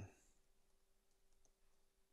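Near silence with a few faint computer keyboard keystrokes.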